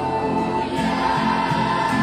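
A group of voices singing a song together, choir-style.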